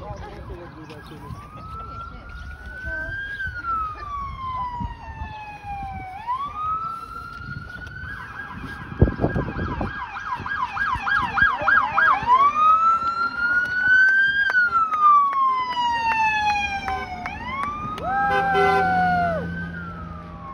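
Emergency vehicle siren wailing in slow rising and falling sweeps, switching to a fast yelp for a few seconds in the middle and then back to the wail. A sharp thump comes about nine seconds in, and a short steady horn blast sounds near the end.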